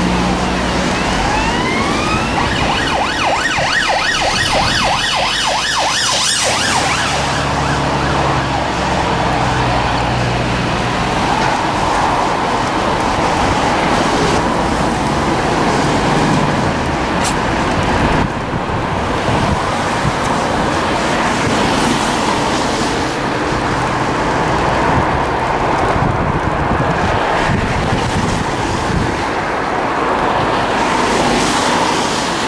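A siren rising in pitch and then warbling rapidly for the first six seconds or so, over a steady loud rush of road traffic and wind noise.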